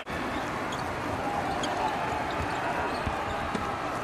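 Live basketball game sound: a ball bouncing on a hardwood court amid steady arena and court noise, with faint scattered thuds and ticks.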